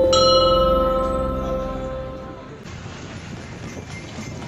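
Brass temple bell struck once, ringing with several high overtones that fade away over about two seconds.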